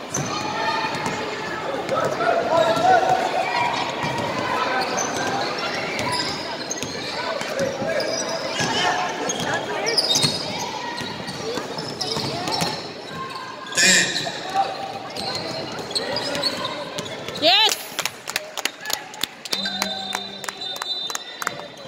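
Basketball game in a gym hall: players and spectators calling out over the play, and a ball being dribbled on the wooden court, with a quick run of bounces near the end.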